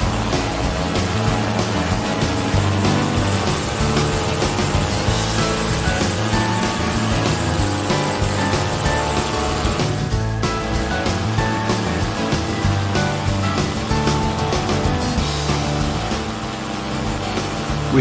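Background music, with the steady running of a trike's two-stroke Simonini Evo engine underneath it during takeoff and climb.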